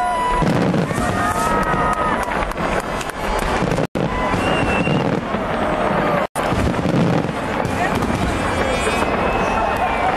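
Fireworks display going off continuously, a dense run of bangs and crackling, with crowd voices mixed in. The sound cuts out completely for an instant twice, about four and six seconds in.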